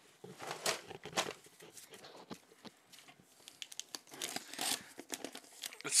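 Small cardboard shipping box being opened by hand: packing tape picked at and torn, with cardboard scratching and rustling. It comes as a run of short rips and scrapes, the louder ones about half a second and a second in and again after about four seconds.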